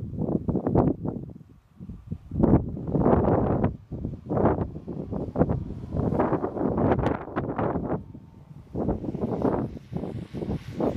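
Wind buffeting the microphone in irregular gusts.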